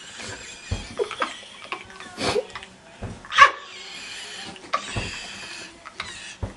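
Scattered short bursts of laughter from people trying to hold it in, with breathy giggling between them.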